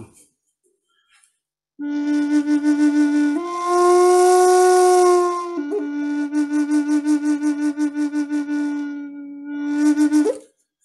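Wooden Native American-style flute played solo, starting about two seconds in: a low held note with a pulsing vibrato, stepping up to a higher, steadier note for about two seconds, then dropping back to the pulsing low note.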